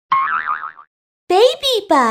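Cartoon logo sting: a short wobbling, boing-like tone, then after a brief pause a high cartoon voice chanting the three-syllable brand name in sliding pitch, the last syllable falling.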